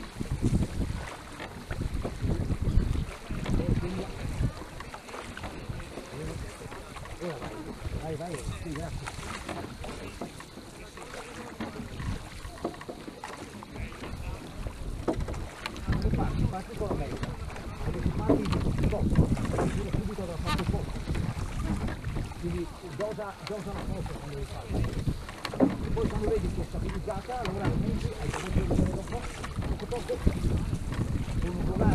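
A Venetian rowing boat under way with its crew rowing standing, heard under wind buffeting the microphone in irregular gusts, with scattered voices.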